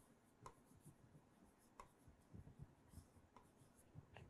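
Near silence, with faint scattered taps and scratches of a stylus writing on a tablet.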